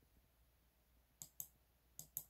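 Near silence broken by two short, sharp clicks about a second and a quarter in, a fraction of a second apart.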